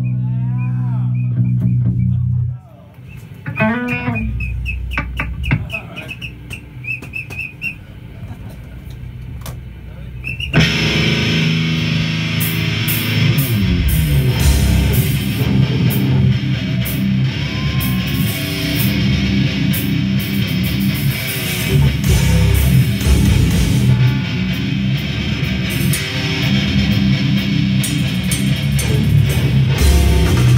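Live death metal band: a held, distorted low guitar chord cuts off after about two seconds, followed by a quieter stretch of sliding, pitch-bending guitar squeals. About ten seconds in, the full band comes in loud, with heavy distorted guitars, bass and fast drumming that carry on steadily.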